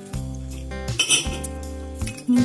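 Background music with steady bass and chord notes. About a second in comes a short crisp crunch: the flaky puff pastry of a baked sausage roll breaking as it is pulled apart by hand.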